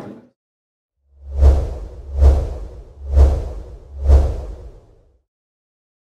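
Logo-sting sound effect: four whooshes about a second apart, each with a deep low boom under it.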